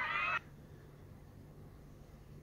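High-pitched voices that cut off abruptly less than half a second in, followed by a faint steady low hum.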